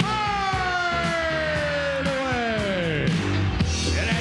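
Arena public-address announcer calling a player's name as one long, drawn-out shout that falls slowly in pitch over about three seconds, over loud rock music with a steady beat.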